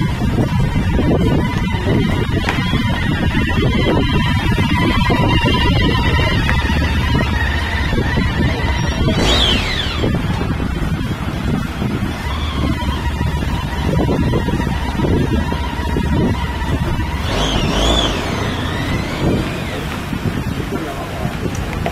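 Arriving motorcade of vehicles with a motorcycle escort: a steady, dense din of engines, with siren wails gliding up and down about nine seconds in and again near the end.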